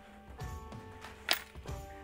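Cardboard and aluminium handling noise as an aluminium crab-grabber pole is drawn out of its long cardboard shipping box: a few soft knocks and one sharp click about a second in. Background music runs underneath.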